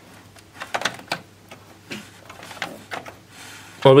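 Light clicks and taps of hands handling a cable and plastic parts inside a metal desktop computer case, a few separate clicks over the first three seconds; a man's voice starts near the end.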